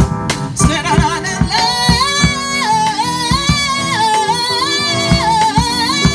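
Live band music: a singer's bending, ornamented vocal line comes in about a second in over a steady drum-kit beat and keyboard.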